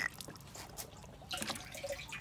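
Liquid nutrient solution dripping and trickling from a plastic dosing bottle into the hydroponic tower's water reservoir, with a few light clicks of the bottle being handled.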